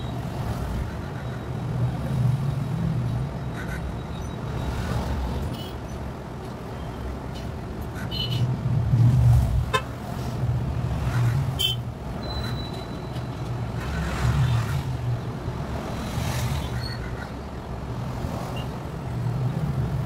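A low background rumble that swells and fades every few seconds, with a few faint clicks and a brief high tone about halfway through.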